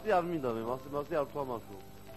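A man's voice speaking in quick short phrases, stopping about a second and a half in.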